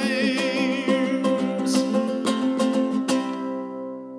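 Acoustic guitar picked through a song's closing bars, the last notes struck about three seconds in and left ringing as they fade.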